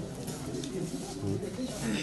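Indistinct, low-pitched talk of several people close by, no single clear speaker.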